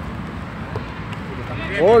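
Steady outdoor background rumble, then near the end a man's loud "Oh!" rising and falling in pitch, reacting to a shot at goal.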